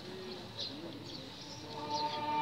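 Faint pigeon cooing, short arching coos, with small high bird chirps over it in a lull in the orchestral music. Near the end the orchestra comes back in with sustained string chords.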